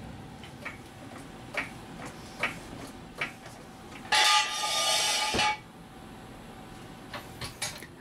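A few light metal clicks, then a loud scrape of about a second and a half ending in a sharp clunk: a steel jack stand being pulled from under the car and dragged across a concrete floor, then set down.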